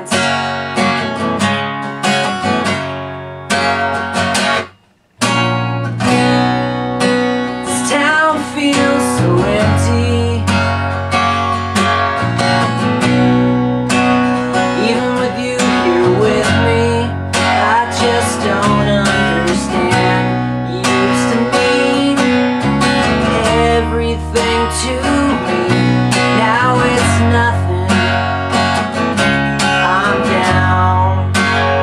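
Acoustic guitar strummed over a violin-shaped hollow-body electric bass, with a man singing: an acoustic duo performance. The band stops dead for about half a second around five seconds in, then comes back in.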